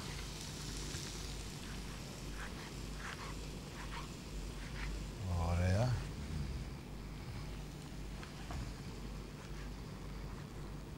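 Faint steady sizzling from a frying pan of kavourmas and chopped fresh tomato cooking over lowered heat, with a few light clicks. A brief vocal sound comes about five and a half seconds in.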